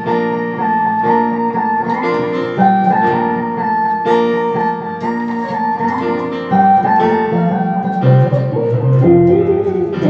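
Electric bass improvising a melodic solo line through a harmonizer pitch-shifter effect, over a backing track of slow sustained keyboard chords. The bass moves into lower, stronger notes near the end.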